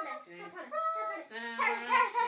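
A child's high-pitched voice making wordless, dog-like vocal sounds in a run of short calls that glide up and down in pitch.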